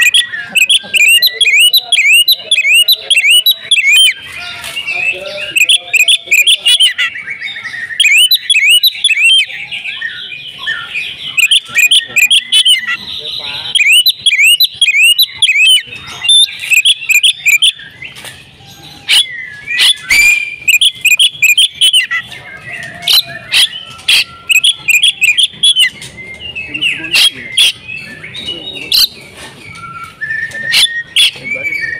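Oriental magpie-robin (kacer) singing: long runs of fast, repeated chirping notes mixed with sharp, very high notes, broken by only short pauses. Near the end the song thins to more spaced-out sharp notes.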